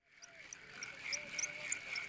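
Faint, steady chorus of calling animals: a high drone with short, high chirps over it, fading in at the start.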